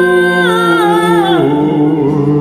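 Duet voices holding a long sung 'oh' with no words, the held note stepping down in pitch twice, about half a second in and again near a second and a half.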